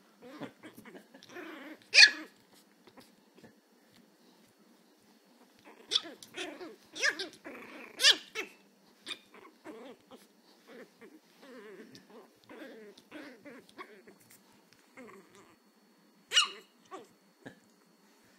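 Chihuahua puppy growling and letting out short, high, still-unformed yaps as it digs and tussles with toys in its fleece bed, with scratching on the fabric between. The loudest yap comes about two seconds in, with a cluster of yaps around six to eight seconds and another near sixteen seconds.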